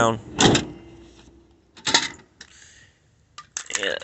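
A few short knocks and clicks: a louder one about half a second in, another near two seconds, and a quick run of clicks near the end.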